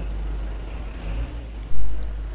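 Low, steady rumble of an idling bus engine close by, with one sudden loud thump near the end.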